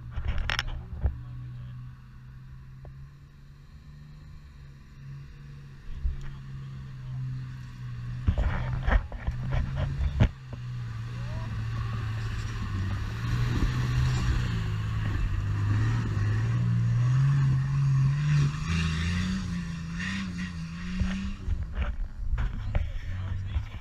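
A 4x4's engine working at low revs up a steep rocky track, with sharp knocks and bangs as the tyres and chassis go over rock steps about 8 to 10 seconds in. From about halfway the tyres scrabble on loose dirt and gravel and the engine revs climb steadily toward the end.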